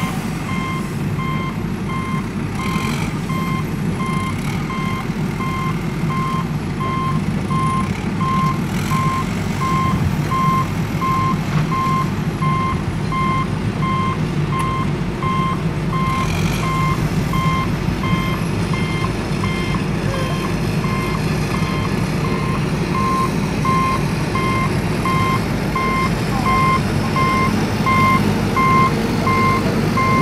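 Heavy truck engine running with its reversing alarm beeping: one high beep repeated at an even pace over a steady low rumble.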